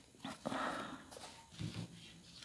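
Faint soft rustle and light slap of a tarot card deck being shuffled in the hands, in short quiet bursts.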